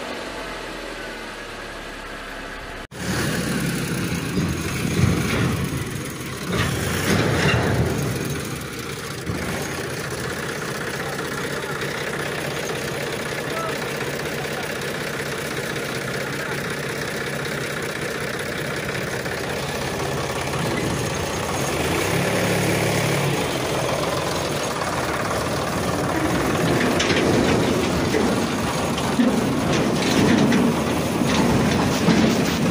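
A vehicle engine sound that cuts in abruptly about three seconds in, after a quieter low stretch, and then runs steadily.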